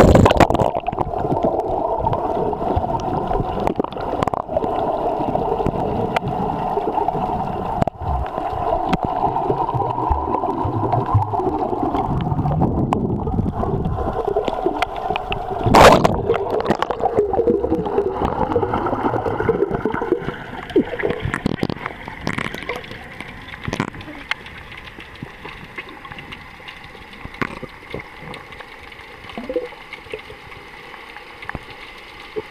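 Splash as the camera goes under the sea surface, then muffled underwater noise of water gurgling and rushing past the camera. There is a loud swoosh about sixteen seconds in, and it quietens over the last third.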